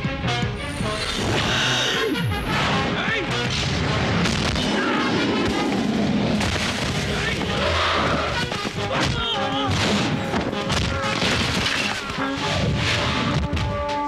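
Film fight-scene soundtrack: dramatic background music under heavy booming impact effects and crashes, with a falling swoosh about two seconds in.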